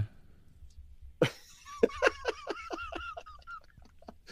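Laughter, recorded close on a microphone: a sharp burst about a second in, then a run of quick breathy pulses, about five or six a second, that fades out.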